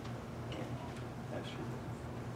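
Quiet meeting-room tone: a steady low electrical hum with a few faint clicks.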